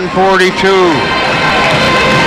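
A commentator's voice for about the first second, then a steady wash of crowd noise with music under it.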